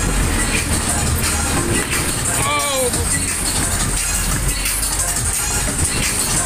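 Maxwell waltzer ride spinning, with loud fairground music over a steady low rumble. About halfway through, a voice gives a short shout that falls in pitch.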